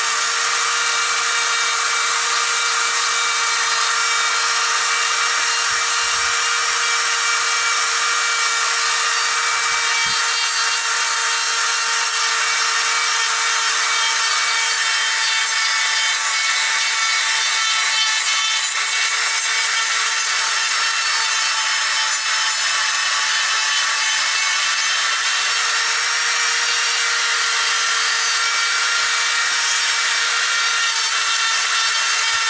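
Handheld electric rotary grinder running continuously at a steady whine, its bit grinding into the wood of a ficus trunk to round off and smooth a trunk-chop wound.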